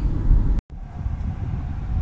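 Road noise inside a moving car, a steady low rumble of tyres and drivetrain, cut off abruptly just over half a second in. A fainter low rumble follows.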